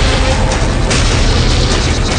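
Dramatic background score: a loud, steady low rumble under a dense wash of sound, with no clear beat.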